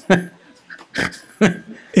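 A man chuckling: three short, breathy bursts of laughter.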